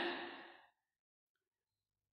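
A man's voice trailing off at the end of a word and fading out within about half a second, followed by dead silence.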